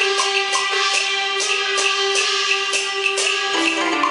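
Taiwanese opera accompaniment music: a long held melody note over a steady, evenly spaced percussion beat, the tune moving to new notes near the end.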